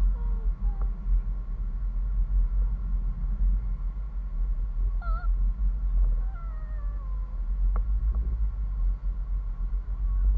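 Wind buffeting the microphone of a camera carried aloft on a parasail rig, a steady low rumble. A few faint short falling tones come through near the start and again from about five to seven seconds in.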